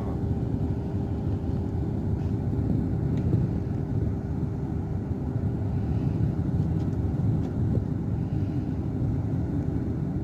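Patrol boat's engine running steadily: a continuous low rumble with a faint steady hum above it.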